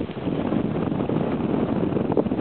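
Wind buffeting the camera's microphone: a steady rushing, rumbling noise.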